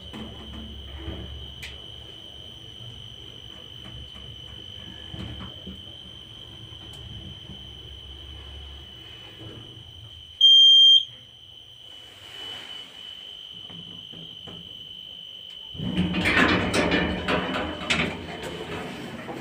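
A 2007 KMZ passenger lift car travels with a low rumble that dies away as it stops, over a steady high whine. About ten seconds in, one loud electronic beep of about half a second sounds, the arrival signal. Near the end the automatic car doors slide open with a loud rattle.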